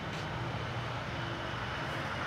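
Steady low hum of distant traffic, with no sharp sounds standing out.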